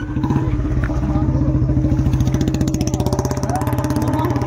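An engine running steadily close by, with a rapid, even pulse, in the manner of a motorcycle.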